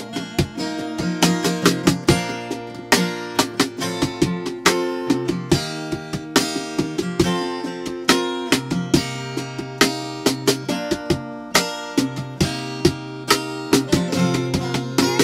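Acoustic guitar strummed through a chord progression: a steady run of sharp strokes, with the chords ringing between them.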